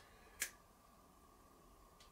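Near silence: room tone, with a single brief click about half a second in.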